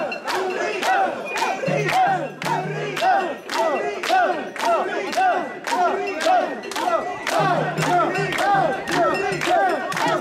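Crowd of mikoshi bearers chanting a rhythmic call in unison as they carry the portable shrine, with hands clapping in time.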